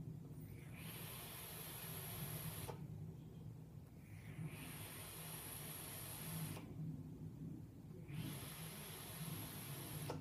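Hiss of an e-cigarette drag through a rebuildable atomizer's dragon coil as it fires, three draws of about two seconds each: about a second in, near the middle, and about eight seconds in. Quieter pauses come between them as the vapour is blown out. A steady low hum sounds underneath.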